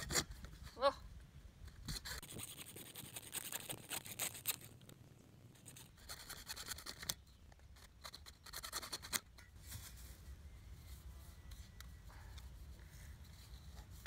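Hacksaw cutting through plastic PVC pipe: a quick run of saw strokes a couple of seconds in, then scattered light clicks as the cut piece is handled.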